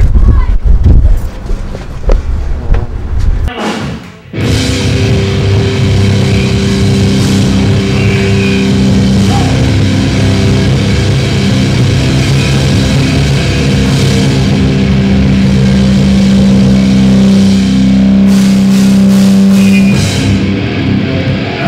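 A loud low rumble for the first few seconds, then, after a cut about four seconds in, loud hardcore/metal band music with heavy distorted guitars held steady.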